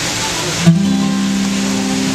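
Acoustic guitar: a chord struck sharply about two-thirds of a second in, then left ringing steadily.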